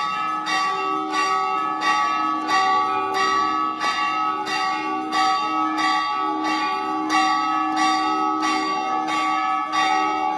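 Temple bells ringing for the aarti, struck rapidly and evenly at about two strokes a second, with a continuous ring between strokes and a lower ringing tone underneath.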